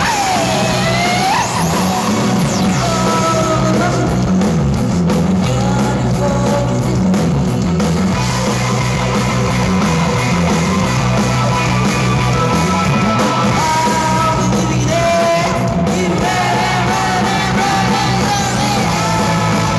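Live rock band playing loud: electric guitars, bass and drums, with a lead line that bends up and down in pitch over a steady, pulsing bass.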